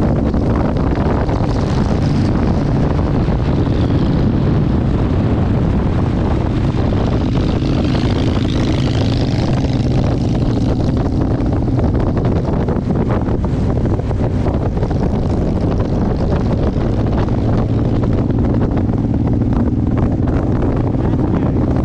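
Motorcycle engine running steadily at cruising speed on the open road, with wind rushing over the microphone.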